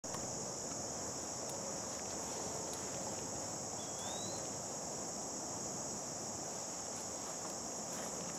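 Steady, high-pitched insect chorus of summer field insects such as crickets, unbroken throughout, with one short rising chirp about four seconds in.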